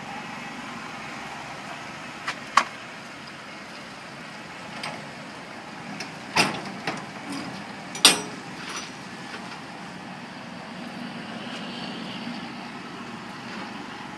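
2004 Dodge Stratus SE sedan running and creeping forward at low speed, a steady low noise, with a few sharp knocks and clicks about two and a half, six and a half and eight seconds in.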